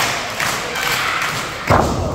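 A wrestler diving off the top rope and landing in the ring: one loud thud from the ring canvas and boards near the end.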